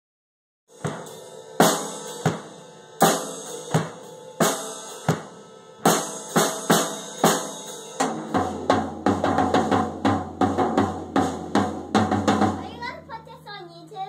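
Silvertone drum kit played with sticks: starting just under a second in, loud strokes about every 0.7 seconds with cymbal crashes, then from about eight seconds a faster run of hits with the drums ringing low, stopping shortly before the end.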